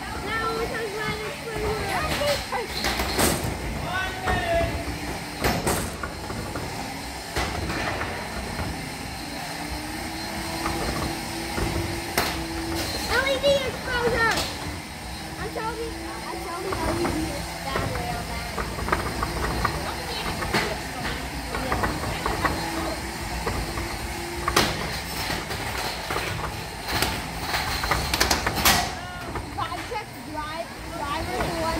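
Spectators chattering around a beetleweight robot-combat arena, with a few sharp knocks of robots hitting the arena. A steady electric-motor whine from the robots comes in about a third of the way through and again later.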